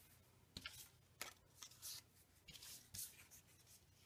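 Faint rustles and light taps of cardstock and paper die-cuts being picked up, slid and set down on a paper layout, about half a dozen short handling sounds.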